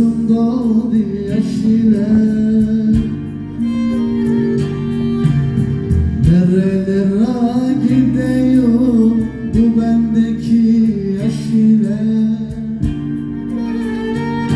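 Live amplified band music: keyboard and string instruments play a folk song while a male singer sings melodic, gliding lines into the microphone.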